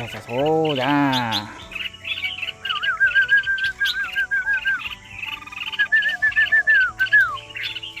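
A man's short wordless voice sound at the start, then a red-whiskered bulbul calling: two runs of quick, repeated warbling notes, with scattered higher chirps around them.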